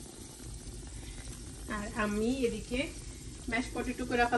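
Faint, steady sizzle of meat frying in a lidded stainless steel pan, with a voice heard briefly about halfway through and again near the end.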